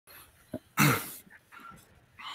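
A person coughing once, loudly, about a second in, just after a short click.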